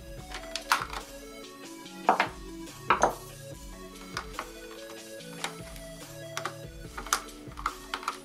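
Background music with steady held notes, over which hard plastic parts of an iMac G3 housing are handled, giving several sharp clicks and knocks. The loudest knocks come about two and three seconds in.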